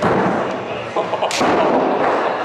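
A loud sudden bang with a rumbling noisy tail, then a sharp crack about a second and a half in.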